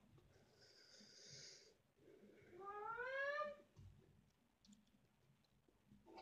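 A soft hiss, then a single rising vocal call about a second long, gliding up in pitch, over otherwise near-silent room tone.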